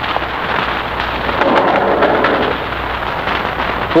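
Radio-drama sound effect of an elevator arriving: a rumbling slide, loudest about one and a half to two and a half seconds in, over the steady hiss and crackle of an old transcription recording.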